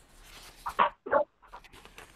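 A dog barking twice in quick succession, two short barks.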